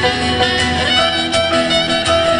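Live pop band playing an instrumental passage with no singing: acoustic guitar strummed over electric bass and keyboard, with saxophone lines and a steady beat.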